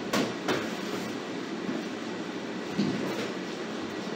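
Short thuds and slaps of a kickboxing drill, feet on the floor and glove or kick contact: two near the start and two more near the end, over steady background noise.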